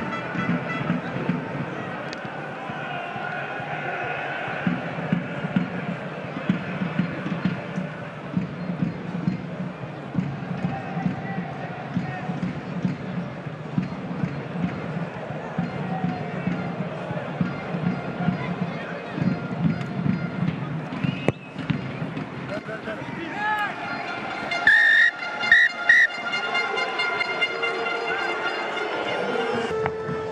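Stadium crowd noise with voices and chanting mixed with music, and three short, loud horn-like blasts near the end.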